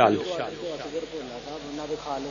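A man's amplified voice ends on a hissed sibilant at the very start. Then quieter, wavering murmured voices follow: the gathering answering 'Ameen' to a prayer.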